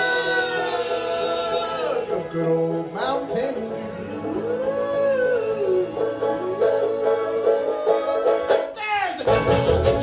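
Bluegrass band playing live: banjo, upright bass and acoustic guitars, with a voice singing long held notes. The low end fills out and grows louder near the end.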